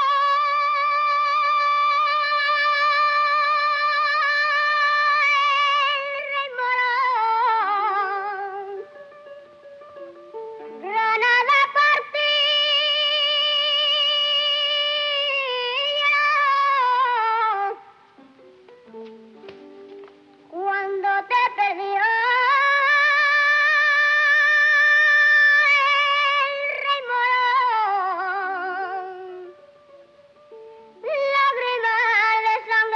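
A boy singing alone in a high, clear voice. He holds long notes with a wide vibrato, in three long phrases that each rise at the start and fall away in steps at the end, with short quieter gaps between them.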